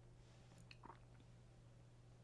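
Near silence: a steady low hum with a few faint clicks a little under a second in.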